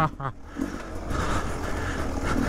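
Beta 300 RR two-stroke dirt bike engine running as the bike moves slowly over rocks, dipping briefly about a quarter of a second in. A short voice sound comes at the very start.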